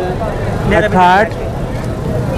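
A motor vehicle's engine running with a steady low rumble, under one drawn-out syllable of a man's voice about a second in.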